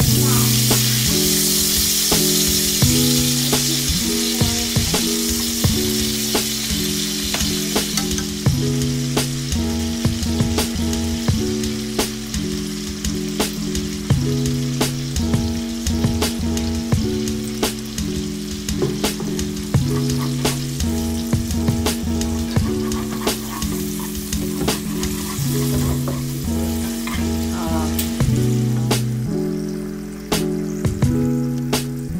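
Minced ginger sizzling in hot oil in a wok, with soy sauce and vegetarian oyster sauce added to the pan for a sauce, and frequent light clicks of stirring. The sizzle is loudest in the first several seconds and then eases off.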